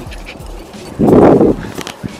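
A Jack Russell terrier gives one short, rough bark about a second in.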